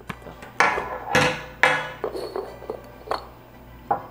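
A handful of light knocks and clinks as items are handled and set down on a tabletop, about five over the four seconds, each with a short ring.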